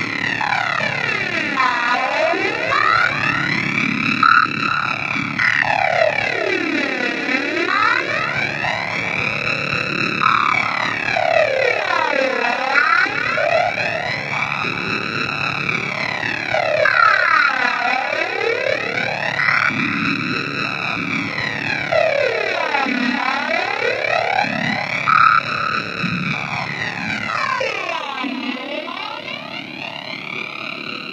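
Arturia MiniBrute analog synthesizer holding a continuous drone with its gate latched. The tone sweeps slowly up and then back down in a jet-like whoosh, repeating about every five seconds.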